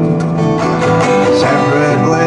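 Cutaway acoustic-electric guitar strummed steadily, ringing chords in an instrumental passage of a song.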